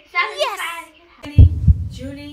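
A brief, high, wavering ululation (zaghrouta) cry, then a heartbeat sound effect: a deep double thump about a second and a half in, over a low steady hum.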